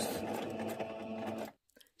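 Electric domestic sewing machine running steadily as it stitches a seam in stretch fabric, cutting off suddenly about one and a half seconds in.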